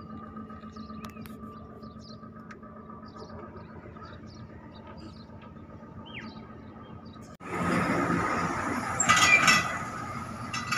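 Steady outdoor background hum with a constant high whine and a few faint chirps; then, after an abrupt cut about seven seconds in, a loaded car-carrier truck passes close by, its engine and tyres loud and its steel deck rattling and clinking.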